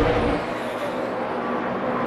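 NASCAR Sprint Cup stock cars' V8 engines running at racing speed around the track: a steady drone with a few faint held tones.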